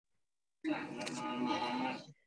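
Speech over background music, like a television playing, coming through a participant's microphone on the call for about a second and a half; the first half-second is silent.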